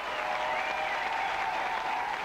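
Theatre audience applauding.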